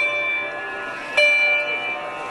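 Sarod in a slow passage: a plucked note rings on and fades, and a second note is plucked a little over a second in and sustains.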